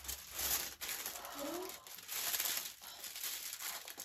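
Paper wrapping being torn open and pulled off, crinkling and rustling on and off.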